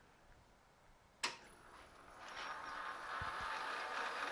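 A sharp click, then a metal lathe's motor and chuck spin up over about a second and settle into a steady running hum with a thin high whine.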